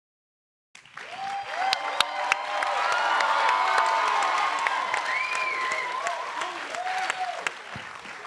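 Audience applauding, with a few whoops among the clapping. The applause starts about a second in, swells, then eases off near the end.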